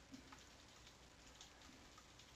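Near silence with a few faint, scattered computer keyboard key clicks.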